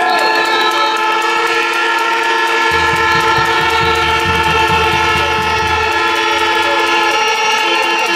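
A crowd sounding air horns, several held at once in different steady pitches, with clapping or rattling clicks over them. A low rumble comes in for a few seconds in the middle, and near the end one horn breaks into short toots.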